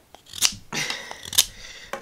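Ganzo G7392-CF folding knife blade carving a green wooden stick: two sharp slicing strokes about a second apart, with softer scraping of the blade on the wood between them.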